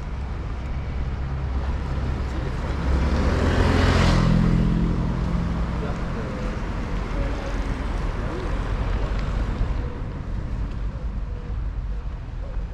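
A car driving past on the street, its engine and tyre noise building to a peak about four seconds in and fading over the next few seconds, over steady traffic background.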